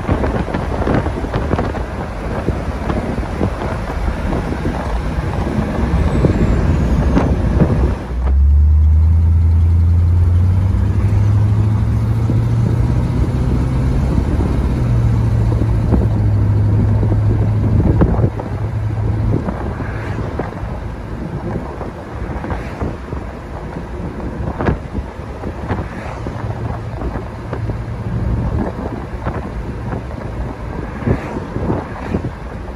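1956 Ford Thunderbird's V8 under way, with wind and road noise throughout. About a quarter of the way in the low engine note comes up strongly and climbs in pitch in steps as the car accelerates, then sinks back under the wind noise a little past the middle.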